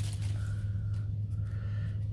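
A steady low hum, with a faint high tone that sounds twice.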